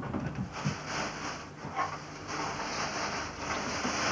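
Steady hiss with a faint low hum, with a few weak, indistinct sounds now and then.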